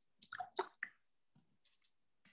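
A few brief, faint squishing rubs in the first second as hands are wiped with a small cloth, then near silence.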